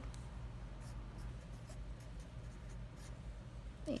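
Black Sharpie felt-tip marker writing on paper: faint scratching strokes as a short line of figures is written.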